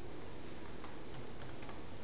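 Computer keyboard keys tapped a few times, typing a password into a login box, with a small cluster of keystrokes about one and a half seconds in.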